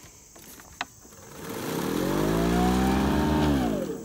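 Toro 60V electric recycler mower's motor and blade starting, with a click just before it spins up in a rising whine, then winding down in falling pitch as it cuts out near the end: the excess load of thick, wet grass packed under the deck stops it.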